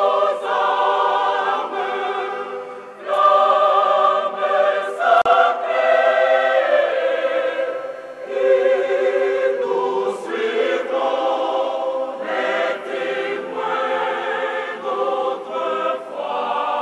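A church choir singing in harmony, in phrases of held notes with short breaks between them.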